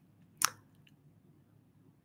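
A single short, wet mouth click, a lip smack, about half a second in; otherwise quiet.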